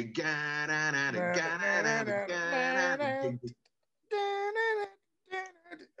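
A man vocally imitating the opening riff of a rock song, singing it without words as a run of held notes that step up and down. After a short pause come two shorter sung phrases.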